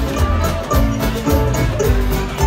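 Live bluegrass band playing an instrumental passage over a steady beat, amplified through the PA: fiddle, mandolin, acoustic guitar, banjo and upright bass.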